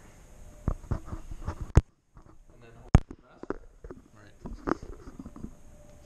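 Plastic connectors and wires of an engine wiring harness clicking and rattling as they are handled on a concrete floor, with two sharper knocks about two and three seconds in. Faint low voices in the background.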